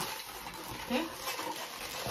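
White 260 latex twisting balloon squeaking and rubbing under the fingers as it is squeezed and twisted into bubbles.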